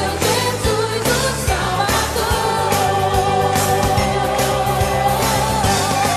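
A song with a singer over a steady beat; about a second and a half in, one long note is held.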